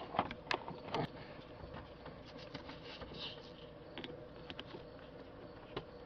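Faint scattered clicks and light taps of hands handling the metal A/C line fittings and line block at the expansion valve, with a faint steady hum underneath.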